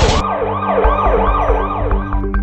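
Ambulance siren in a fast yelp, its pitch rising and falling about three times a second.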